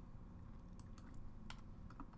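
Faint computer keyboard typing: a handful of separate keystrokes, spaced irregularly, as numbers are entered into a form.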